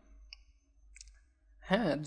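Two faint short clicks in a pause between words. A man's voice resumes near the end.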